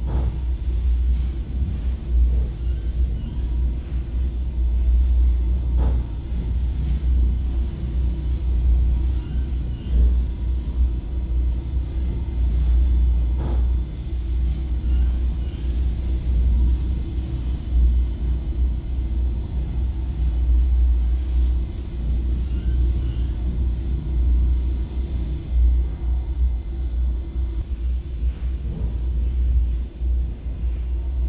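Low, fluctuating rumble of wind and handling noise on a handheld camera's microphone, with a few faint clicks.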